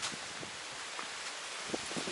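Wind blowing steadily: an even rustling hiss of wind through leaves and across the microphone.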